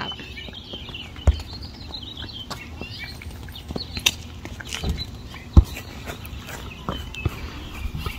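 Birds chirping faintly over outdoor background noise, with a few short, irregular thumps, the loudest about halfway through.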